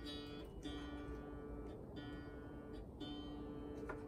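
One string of a three-string blues bowl, a homemade banjo-like instrument, plucked about once a second and left to ring on the same note each time: it is being tuned to GDG by a clip-on tuner.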